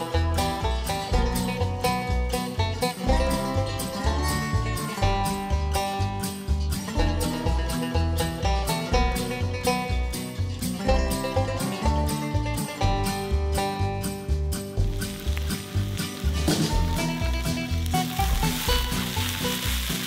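Background music with a steady beat and a melody. A skillet of tater tots and pork frying over a campfire sizzles faintly beneath it, more plainly near the end.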